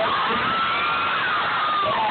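Audience whooping and cheering over room chatter, with one long drawn-out whoop held for about a second and a half.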